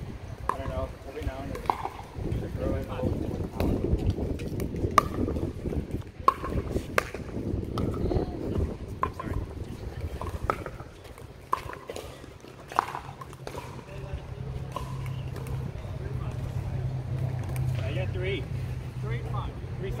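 Pickleball rally: a string of sharp pops from paddles striking the plastic ball, spaced a second or two apart, ending about 13 seconds in. A steady low hum sets in about 11 seconds in.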